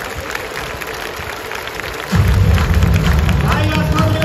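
Crowd chatter filling a baseball stadium, then about halfway through, loud music with heavy bass suddenly starts over the stadium PA as the pregame opening movie begins.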